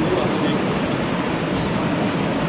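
Steady rushing background noise of a large room, with no clear events.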